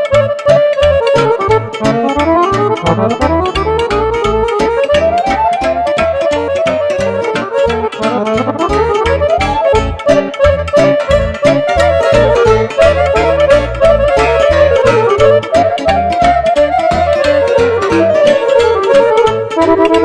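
Live Romanian lăutărească folk music from a band of clarinet, cimbalom, accordion and keyboard: quick melodic runs that rise and fall over a steady, quick bass-and-chord beat.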